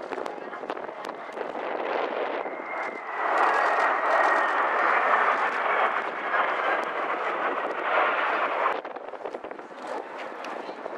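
Jet engine noise from a low formation flypast of an E-767 AWACS and T-4 jet trainers: a broad rushing roar that swells about three seconds in, with a high whine slowly falling in pitch as the aircraft pass, then cuts off suddenly near the end.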